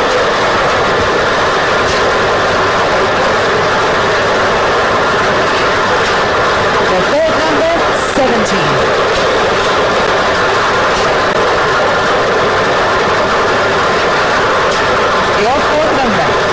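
Lottery ball-draw machine mixing its numbered balls, a loud, steady rattle and whir that holds without a break while balls are drawn.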